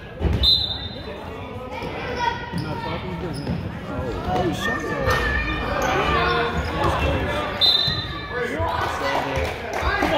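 Youth basketball game in a gym: spectators and players talking and calling out, a basketball bouncing on the wooden floor, and a couple of brief high-pitched squeaks, one just after the start and one near the end, all echoing in the large hall.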